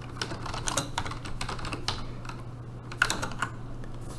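Typing on a computer keyboard: irregular keystrokes in short quick runs, with pauses between them.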